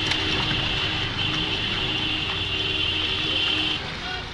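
Vehicle engines running on a muddy mountain track, with a low rumble under a steady high-pitched whine that cuts off shortly before the end.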